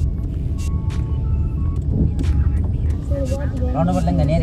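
Steady low road rumble of a moving vehicle heard from inside the cabin, with scattered clicks and knocks. Background music plays with it, and a voice comes in near the end.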